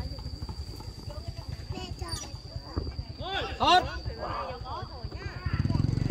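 Players calling out across a football pitch, one loud shout about three seconds in, over a low, uneven rumble that gets louder near the end and a steady high-pitched tone.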